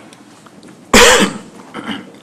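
A person's single loud cough about a second in, followed by a much fainter short sound near the end.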